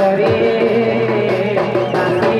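Jhumur folk song played live and amplified through a PA: a man sings over steady drumming and sustained melodic accompaniment.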